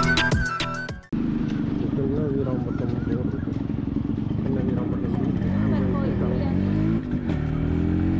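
Yamaha motorcycle engine running while riding, its pitch rising and falling with the throttle. Background music plays for about the first second, then cuts out.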